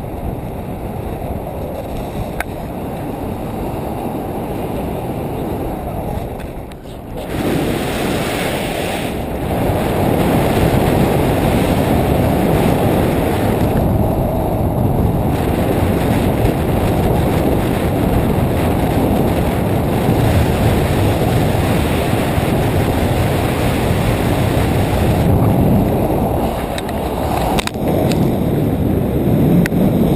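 Wind rushing over the microphone of a camera held out on a pole during a tandem paraglider flight. It is a steady, low rumble that dips briefly about seven seconds in and is louder from then on.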